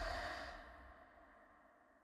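A breathy, sigh-like exhale as the last of the film score dies away, fading to near silence.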